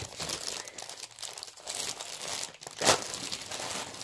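Plastic packaging crinkling and rustling as it is handled and pulled open, with one louder crackle near three seconds in.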